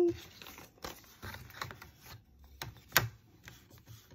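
A paper envelope rustling as it is slid and handled on a desk, with scattered small clicks and one sharp tap about three seconds in.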